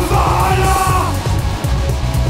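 Heavy alternative rock song: a yelled vocal note that ends about a second in, with the band playing on underneath.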